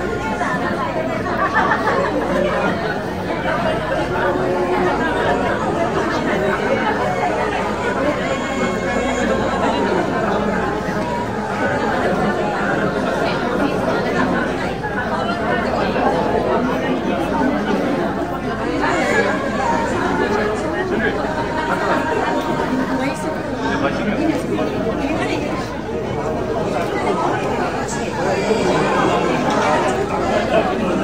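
Many people talking at once: a steady chatter of overlapping voices with no single speaker standing out.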